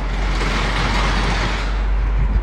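Road traffic noise: a steady rush from a vehicle passing on the street below, with a low rumble underneath.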